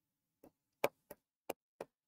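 Pen tip tapping and clicking against a writing board as numbers and dots are written: five short taps spread over about a second and a half, the second the sharpest.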